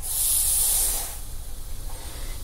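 Smokeless powder poured from a cup into a funnel: a hiss of running granules lasting about a second.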